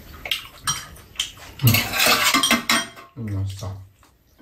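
Metal spoons and chopsticks clinking and scraping against metal bowls and a metal serving tray during a meal, in a run of short clicks that gets busier around the middle. Near the end a person hums a low 'mmm'.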